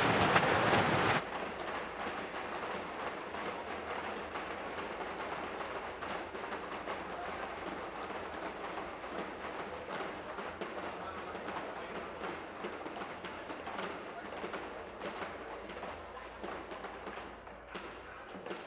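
Legislative division bell ringing loudly, stopping abruptly about a second in, calling members in for a vote. After it comes a steady murmur of members talking and moving about the chamber.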